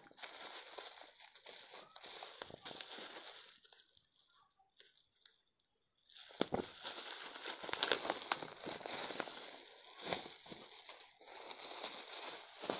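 Plastic bubble wrap crinkling and crackling as hands pull it off a flexible-leg gorilla tripod, with a quieter lull of about two seconds midway before the crackling picks up again.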